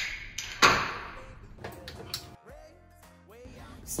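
A Busch Light beer can cracked open: a sharp pop about half a second in, followed by a fizzing hiss that fades over about a second. Background music plays underneath.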